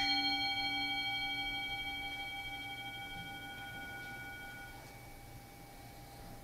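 A struck bell ringing out with several clear tones at once, slowly fading; the lowest and some of the higher tones die away within about four to five seconds while the others linger.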